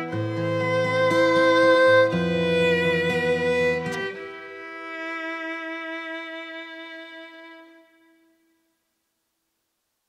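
Violin and acoustic guitar play the closing bars of a song. About four seconds in the guitar accompaniment stops, and a last held violin note fades away.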